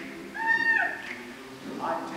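A single high sung note, held for about half a second and sliding down at its end, over a choir's soft sustained chord.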